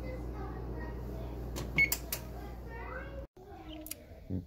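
GE electric range's touch control panel giving a short electronic beep about two seconds in, with a couple of clicks around it, as the oven is set to bake. A steady low hum runs underneath.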